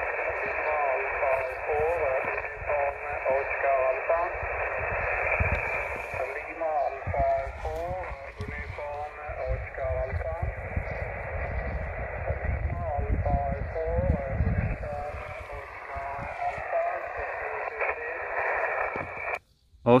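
Single-sideband voice of a distant amateur station coming through a Xiegu X5105 transceiver's speaker on 21.240 MHz: a thin, narrow-band voice with static hiss behind it. A low rumble runs underneath through the middle, and the received audio cuts off suddenly shortly before the end.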